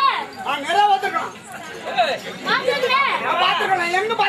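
Speech only: lively spoken stage dialogue between two performers, one voice high-pitched.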